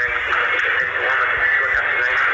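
A woman talking in a phone-recorded video message, her voice muffled under a steady hiss.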